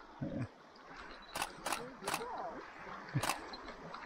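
Camera shutter firing four times at uneven intervals, as quick sharp clicks: two close together about a second and a half in, then single clicks near two and three seconds in. Brief faint voices murmur between them.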